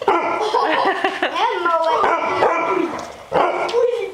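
Barbet puppies yipping and barking in rough play, a dense run of short, high, overlapping calls.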